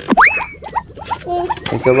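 Styrofoam packaging squeaking as hands pull at it: two sharp squeaks that sweep up quickly and then sag, about a second and a half apart, with light crackling and rustling of the foam between them.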